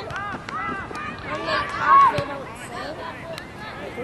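Several voices shouting and calling out from the sideline, overlapping one another, loudest about two seconds in.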